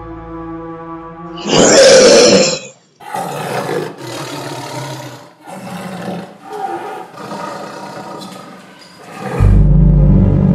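Tiger roaring: one loud roar about one and a half seconds in, then a run of shorter roars with short gaps between them. A loud, deep rumble of music comes in near the end.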